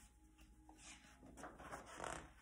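Near silence: quiet room tone with faint rustling of a picture book's paper pages being handled.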